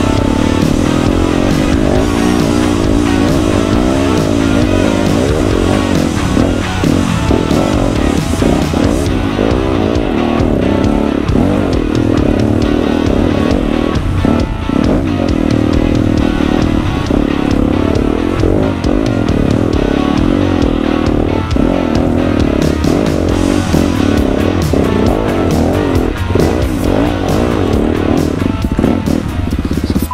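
Dirt bike engine revving up and down as it climbs a rough dirt trail, mixed with background music.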